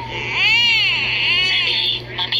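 A baby's cry, electronically pitch-shifted and layered into stacked copies: two wails, each rising and then falling in pitch, the first louder and longer, the second shortly after.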